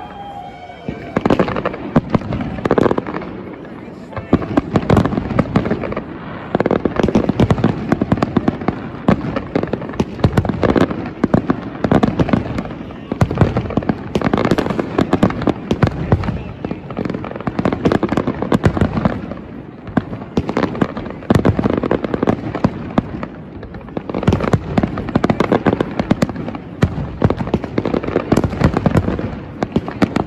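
Fireworks display: a dense, continuous barrage of bangs and crackling from shells bursting overhead, with a few brief lulls.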